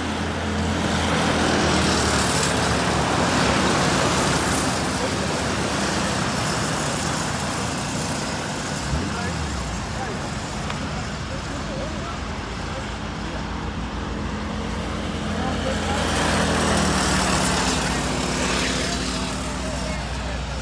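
Pack of racing go-karts with their small engines running at speed, louder as the karts come by about two seconds in and again near the end, and quieter while they run the far side of the track.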